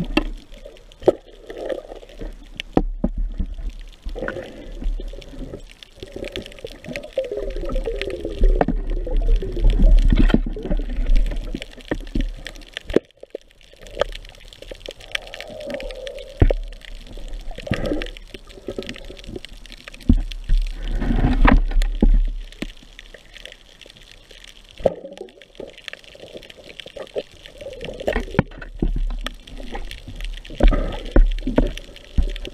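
Underwater sound picked up by a diving camera: water rushing and gurgling around the camera housing as the diver swims, with many scattered short clicks and knocks.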